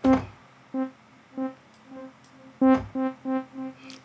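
A short synth note played twice through a granular delay plugin, each strike followed by a string of fading echoes. The echoes don't come back evenly in time: the granulated delay is moving between two delay times, so their spacing drifts, and they come closer together after the second note.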